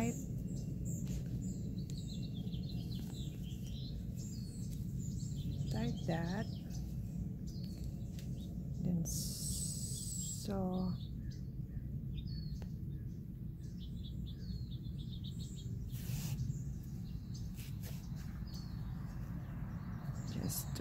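Steady low background hum with birds chirping faintly, and a few short gliding calls about six and ten seconds in.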